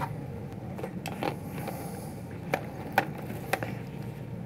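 A handful of sharp, separate clicks and light knocks from handling a camera as its lens is taken off and swapped.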